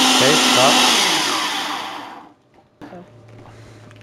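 Ninja blender running at speed, blending vitamin C tablets into water, then spinning down with a falling pitch and stopping a little over two seconds in.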